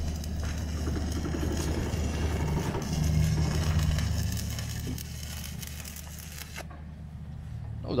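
Semi-automatic (MIG) welding arc crackling as a welder fills technological holes in a steel bridge deck plate; it cuts off suddenly about six and a half seconds in. A steady low engine-like hum runs underneath.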